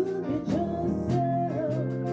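Live band playing: a woman singing a held, wavering note over electric bass, keyboard and drums, with evenly spaced cymbal strokes keeping the beat.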